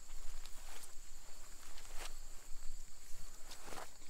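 Soft rustling and a few light clicks of a rope being looped and handled in the hands, over a steady high insect drone.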